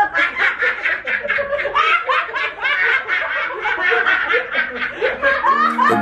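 Several people laughing together in a long run of quick, breathy giggles and snickers. Just before the end, an outro music track starts with steady low notes.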